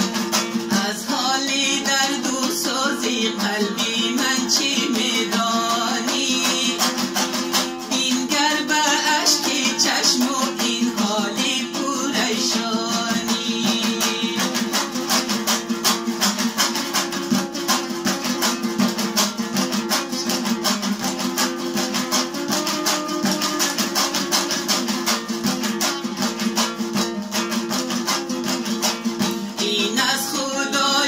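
A long-necked Afghan dambura strummed in a fast, steady rhythm, its open strings giving a constant drone under the melody.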